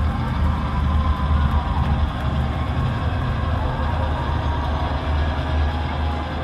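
The band's music through the concert PA, heard from the audience: a loud, steady low bass drone that swells and fades without a clear beat.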